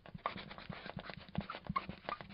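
Marker pen writing on a whiteboard: a quick, irregular run of short strokes with brief squeaks.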